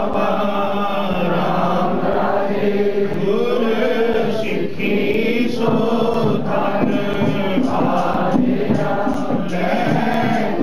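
Sikh congregation chanting together, many men's and women's voices in one sustained, wavering chant.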